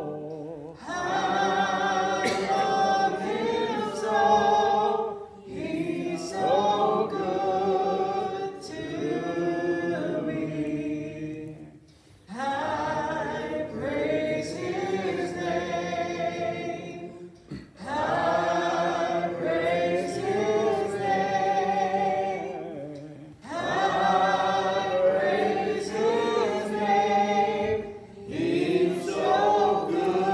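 Congregation singing a hymn together, led by a woman's voice over a microphone, in sung lines that pause briefly for breath about every five or six seconds.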